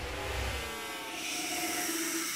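Electronic logo-sting sound design: a lull between heavy bass hits, filled by gliding tones and a swelling whoosh that builds through the second half.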